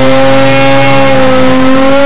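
A loud, steady electronic tone held at one pitch, with a buzzy, distorted edge, starting abruptly at the start.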